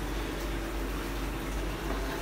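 Steady hum with an even wash of running-water noise, typical of a reef aquarium's circulation pump running.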